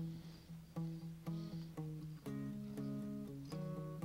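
Soft background music: a guitar picking single notes, a few a second.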